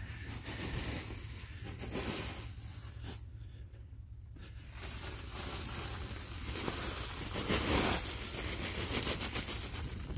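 Shredded mulch of straw, corn husk and banana peel pouring out of a woven plastic sack onto a compost pile, with the sack rustling. It gets louder in the second half as the sack is tipped and emptied.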